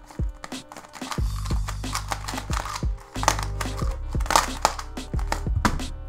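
Quick clicking and clacking of a large transparent-plastic YuXin 3x3 speed cube being turned fast in a timed solve. Background music with a steady bass runs under it.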